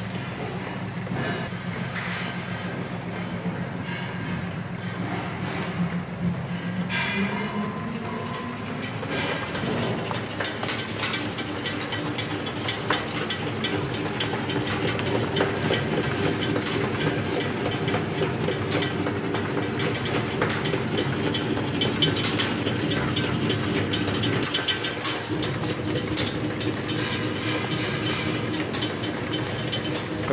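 ZP-9B rotary tablet press running. Its hum rises in pitch about a quarter of the way in as the machine speeds up, then settles into a steady, fast mechanical clatter.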